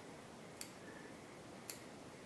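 Two crisp snips of small fly-tying scissors cutting strands of Krystal Flash, about a second apart, over faint room tone.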